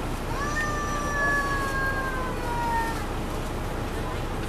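Cabin noise inside a 2002 MCI D4000 coach with its Detroit Diesel Series 60 engine running as the bus creeps forward. A high two-note whine rises sharply about a quarter second in, then slowly sinks in pitch and fades out about three seconds in.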